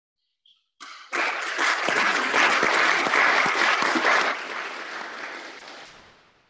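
Congregation applauding. The clapping starts about a second in, is loudest through the middle and dies away toward the end.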